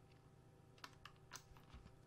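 A few faint computer keyboard key clicks over near silence, starting a little under a second in.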